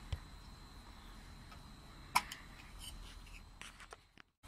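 Cap being pulled off the focuser drawtube of a Skywatcher FlexTube 250P Dobsonian telescope: quiet handling with one sharp click about two seconds in and a few faint ticks after it.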